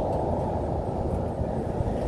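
Steady low rumble of passing highway traffic, even throughout, with no distinct engine note or sudden sounds.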